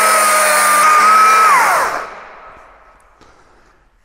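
Stihl MSA 220 C battery chainsaw running at full speed with its bar in a timber beam, then released about a second and a half in, its pitch falling as the motor and chain wind down.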